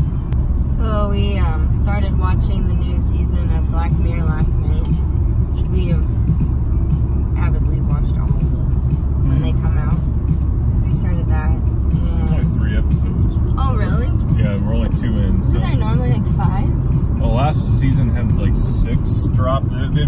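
Steady low road and engine rumble inside a moving car's cabin, with a song with vocals playing over it.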